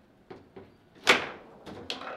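Table football play: the ball knocking against the plastic figures and table walls, with the rods clacking, a few quick knocks and one much louder hard knock about a second in.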